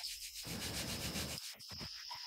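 Hands rustling and rubbing through dry bran substrate in an insect breeding box for about a second, with house crickets chirping steadily and high in the background.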